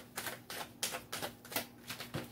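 Tarot cards being shuffled by hand: a quick run of crisp card clicks, about four a second.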